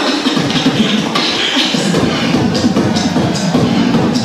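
Live beatboxing into a microphone, amplified through PA speakers in a large room: a continuous rhythmic stream of drum-like mouth sounds.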